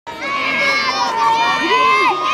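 A group of children shouting together in high, drawn-out voices, heckling the opposing team at a youth baseball game.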